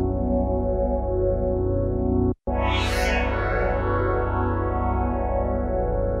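A music loop played through the Tonsturm FRQ Shift frequency-shifter plugin's resonator feedback effect, giving a dense, metallic ringing of many held tones. About two and a half seconds in the sound cuts out for an instant, then comes back with a bright, hissy burst that rings away.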